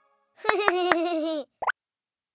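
Cartoon sound effect: a short pitched plop-like tone that drops slightly in pitch, with three quick clicks on it, then a brief rising blip.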